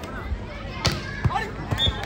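A volleyball struck hard in a rally: one sharp smack about a second in, then a few lighter thuds as the ball is played and lands. A brief high tone sounds near the end, over crowd voices.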